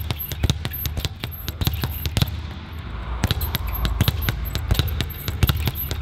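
Leather speed bag being punched, a rapid run of sharp knocks, several a second, as the bag rebounds off its overhead platform board, with a brief break near the middle.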